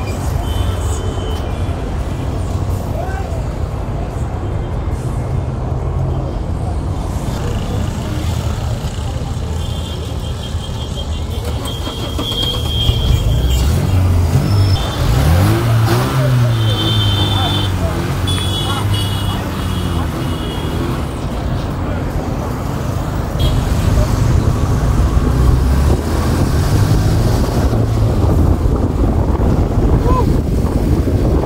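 A vehicle engine runs close by amid street traffic, a steady low hum. About halfway through, an engine's pitch rises and falls back.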